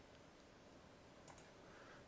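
Near silence: faint room tone, with a single faint click, as from a computer mouse button, a little over a second in.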